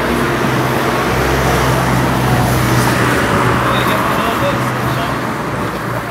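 Steady low vehicle engine drone with road noise, and indistinct voices underneath.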